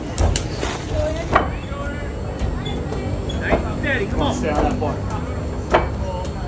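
Indistinct shouting from onlookers, thickest in the second half, over a steady low rumble, with a few sharp knocks scattered through it.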